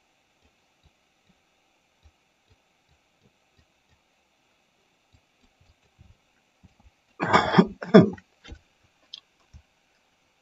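Faint, scattered computer-mouse clicks, then about seven seconds in a loud two-part throat clearing close to the microphone.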